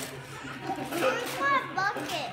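Young children's high-pitched voices, chattering and calling out as they play, loudest in the second half.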